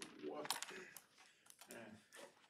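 A few faint, sharp clicks and taps, with a faint murmur of voice between them.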